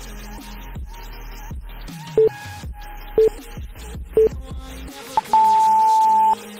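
Workout interval-timer countdown beeps over background music: three short beeps a second apart, then a longer, higher beep lasting about a second near the end, signalling the start of the next 30-second exercise interval.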